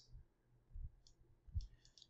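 Faint clicks from a computer mouse's scroll wheel: a few soft ticks about a second in and a short run of them near the end, with a couple of dull low bumps.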